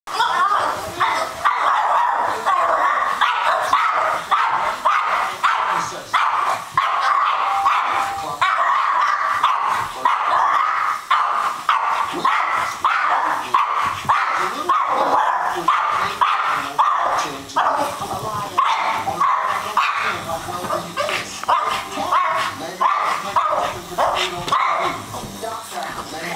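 Small dog barking rapidly and almost without pause as it chases an indoor toy helicopter, over the steady whine of the helicopter's motor and rotor.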